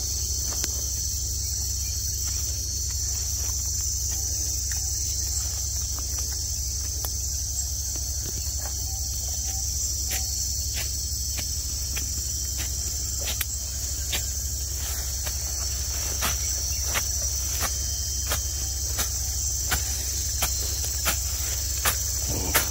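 Insects chirring in one steady, high-pitched drone, with a steady low hum underneath and a few faint scattered clicks.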